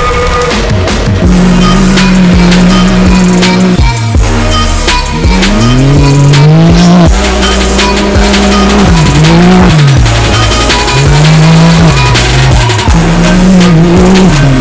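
Rally-raid buggy's engine revving, its pitch repeatedly climbing and dropping as it accelerates and shifts gears, with music playing underneath.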